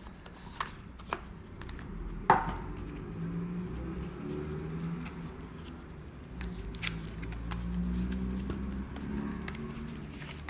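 Cardboard box and paper packaging handled by hand: rustling and light taps, with a few sharp clicks. The loudest is a snap a little over two seconds in.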